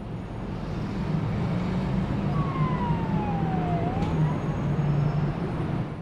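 City traffic rumble with a distant siren: one wail that glides down in pitch and then back up about halfway through.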